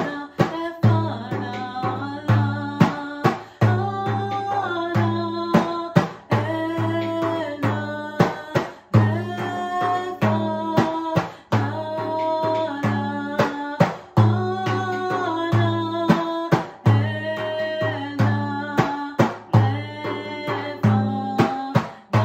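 A woman singing a mantra while beating a hand-held frame drum, a deep boom with each stroke in a steady rhythm under her sustained, sliding vocal line.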